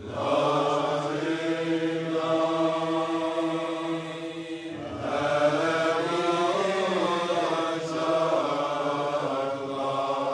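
Male chanting of a Sufi dhikr in long, sustained melodic phrases, with a short breath break about five seconds in.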